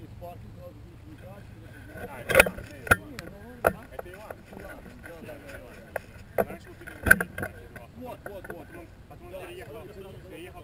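Indistinct voices of people talking on an open field, with a handful of sharp knocks scattered through, the loudest about two and a half and seven seconds in.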